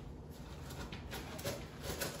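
Quiet kitchen with a low steady hum and a few faint, short clicks and knocks spread across two seconds.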